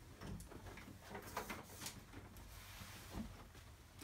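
A few faint, soft swishes of a dry microfiber cloth wiping the screen of a flat-screen TV, the clearest in the middle.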